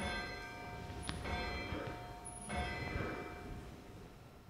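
A bell struck twice, about two and a half seconds apart, each stroke ringing on in several steady tones and fading away. It is rung at the elevation of the chalice during the Eucharistic consecration.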